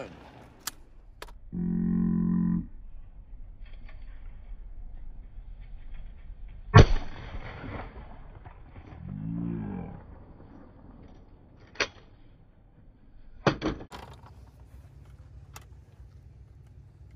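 A single loud shotgun shot from an over-and-under at a sporting clay target about seven seconds in. It is preceded by a brief steady hum about a second and a half in, and followed near the end by a few sharp metallic clicks as the gun is broken open.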